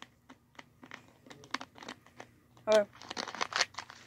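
Thin plastic soda bottle crinkling and clicking as it is gripped and handled: scattered small crackles, then a denser spell of crackling near the end.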